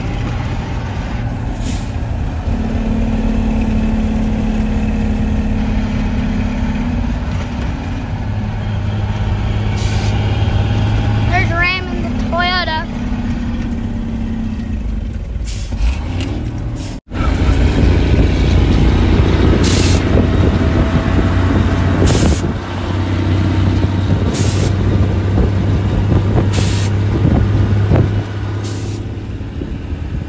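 An old water truck's engine running steadily under load as it drives on a rough dirt road, heard inside the cab as a loud low drone with cab rattle. A brief warbling high tone comes about twelve seconds in. Short hisses recur every couple of seconds in the second half.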